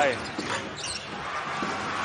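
Basketball thudding on a hardwood court as it is dribbled, a few separate bounces, over the steady noise of an arena crowd. A commentator's voice trails off at the start.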